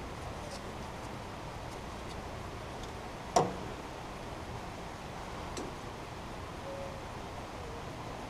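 Hands handling a small plastic valve fitting and a roll of thread-seal tape: faint small ticks over a steady background, with one sharp click about three and a half seconds in.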